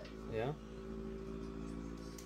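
Steady hum of the vibration motor in a cordless heated back-brace massager, running continuously rather than pulsing.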